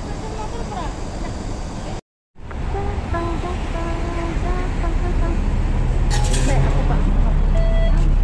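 Street traffic with voices in the background, then, after a cut, a city bus's engine rumbling, growing louder as the scene moves on board, with a short burst of hiss about six seconds in.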